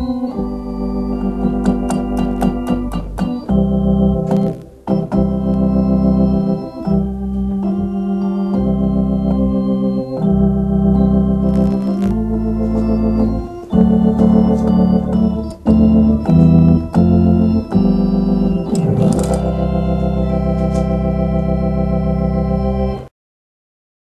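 Hammond A100 organ playing sustained chords over a steady bass line, the chords changing every second or two with short breaks between phrases. It stops abruptly near the end.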